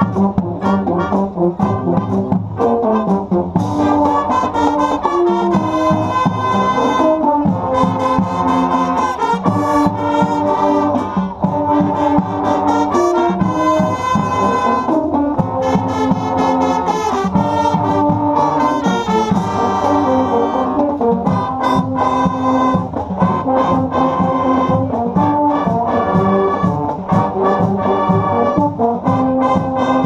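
School marching band (banda marcial) playing live, loud and steady: full brass section of trumpets, trombones and euphoniums sounding sustained chords over a steady beat.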